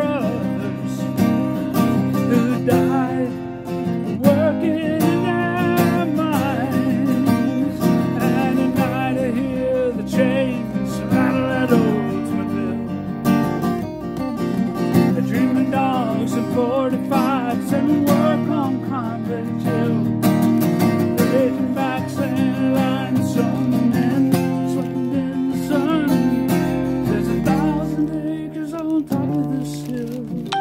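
A man singing a folk song to his own strummed acoustic guitar, played live and unamplified. The playing eases off near the end.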